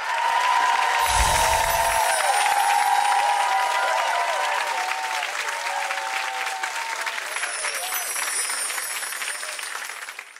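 Studio audience applauding, a dense run of clapping with voices calling out over it, which slowly fades toward the end. A brief low thud comes about a second in.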